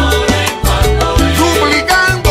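Cuban timba (salsa) dance music: a bass line and percussion strikes keeping a steady beat, with pitched instruments above.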